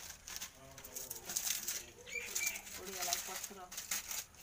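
Low voices talking, with scattered crackles and rustles. A bird gives two short high chirps a little after two seconds in.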